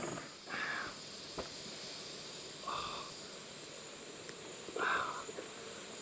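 Rainforest insects droning steadily at a high pitch. A short mid-pitched animal call comes three times, about two seconds apart.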